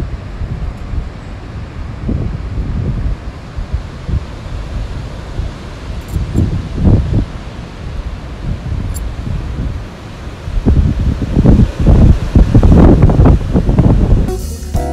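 Wind buffeting a phone's microphone, in uneven gusts that grow strongest in the last few seconds.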